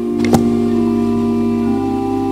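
Organ playing slow, sustained chords that shift from one to the next. A single sharp click sounds once about a third of a second in.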